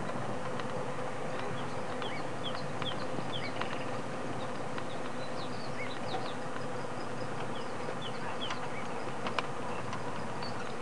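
Outdoor bush ambience: a steady insect hum with many short, high chirps scattered through it and a few faint clicks.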